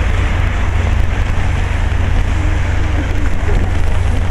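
Steady, loud outdoor noise of rain and city traffic with a deep low rumble, and faint voices in the background.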